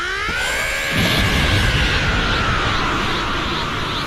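Anime power-up sound effect for an energy aura: a rising whine that levels off and slowly sinks, joined by a deep rumble from about a second in.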